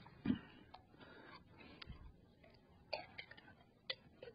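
Faint, scattered clicks and taps as the jar of cheese sauce and the glass bowl of chili are handled, with a soft thump about a quarter second in.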